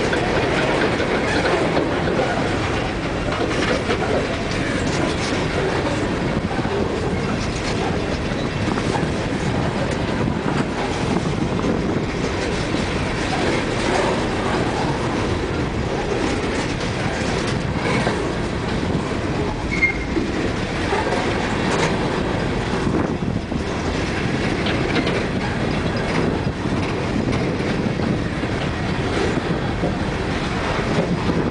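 Empty coal train rolling past, its steel wheels running steadily on the rails with a continuous rumble and clatter from the empty cars.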